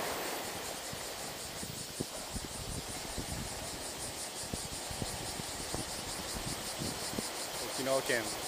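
Steady wash of small waves on a coral-rock shore, with insects chirping high up in a fast, even pulse. Irregular low bumps of wind on the microphone come and go.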